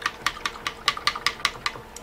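A quick, uneven run of light, sharp taps or clicks, about six a second.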